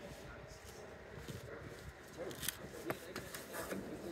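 Quiet background with a few faint clicks and light handling noise.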